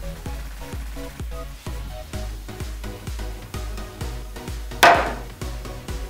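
Background music with a steady beat, and about five seconds in a single sharp strike of a wooden mallet driving a chisel into a poplar board to cut a marking.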